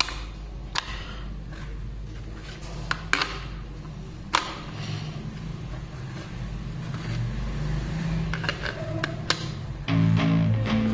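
18650 lithium-ion cells being pressed into a plastic power-bank battery holder with spring contacts: a handful of sharp, separate clicks as the cells snap into place, over a low steady hum.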